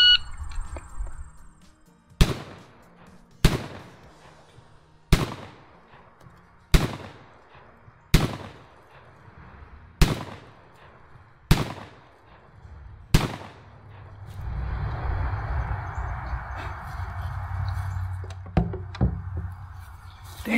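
A 12-gauge shotgun fired eight times at a steady pace, a shot about every one and a half seconds, in a timed shooting drill. After the last shot, a steady rushing noise.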